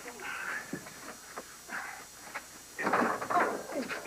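Breathy gasps and wordless vocal exclamations from a man and a woman in a cramped space, a few short ones and then the loudest, longer burst about three seconds in.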